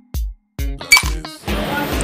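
Background music with a steady beat, and about a second in a bright clink: a cartoon sound effect of an ice cube dropping into a drink cup.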